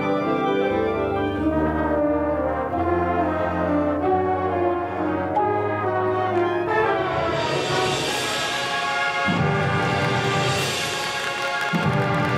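High school marching band brass playing held chords over a low bass line. From about seven seconds in, the texture changes to repeated swelling crescendos with a bright, cymbal-like wash on top.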